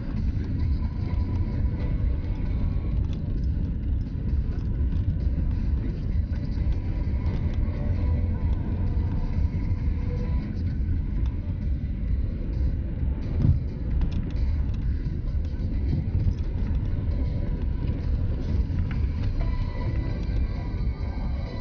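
Car driving slowly on a snow-packed road, heard from inside the cabin: a steady low rumble of engine and tyres, with one short thump about two-thirds of the way through. Music plays quietly underneath.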